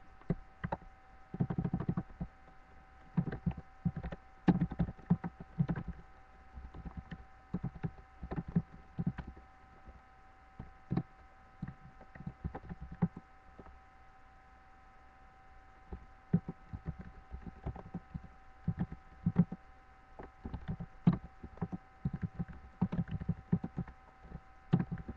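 Irregular soft thumps and taps close to the microphone, coming in uneven clusters, over a steady faint electrical tone.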